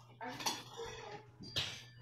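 Faint clinks and clatter of small hard objects being handled, the sharpest about a second and a half in, over a low steady hum.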